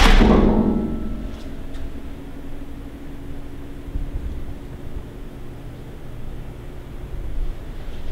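A sudden knock, then a ringing tone that slowly fades over about six seconds, with low rumbling handling noise underneath.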